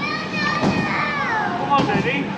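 A young child's high-pitched voice calling out in drawn-out, wavering cries, over the chatter of passers-by.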